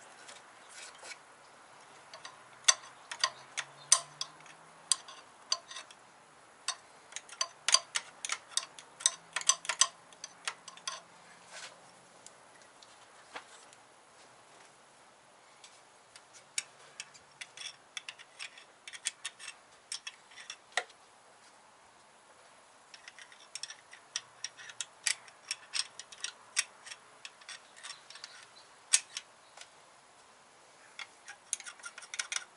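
Screwdriver tip scraping and picking old RTV sealant off the valve-cover sealing surface of a 1.8T cylinder head: irregular runs of sharp metal clicks and scratches, with a lull about halfway through.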